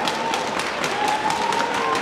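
Audience clapping in a large hall, dense and continuous, with a long drawn-out cheer from the crowd held above it and rising slightly near the end.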